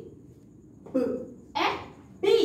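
A woman's voice saying two short, separate syllables about a second in, sounding out the letters of a two-letter word one at a time.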